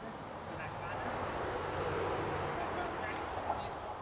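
Indistinct, muffled talk from people, over a background hiss that swells toward the middle and eases off again.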